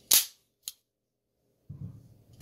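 A sharp metallic clack from the Sig P210A pistol's steel action cycling on snap caps, followed by a lighter click about half a second later. Near the end comes scraping and handling noise with a small click as the magazine is drawn out of the grip.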